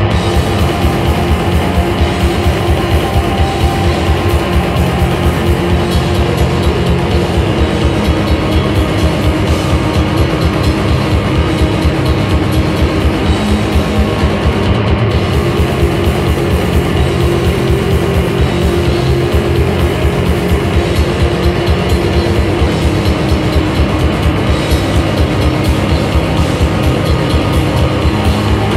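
Live rock band playing: electric guitars and bass over a drum kit, loud and continuous.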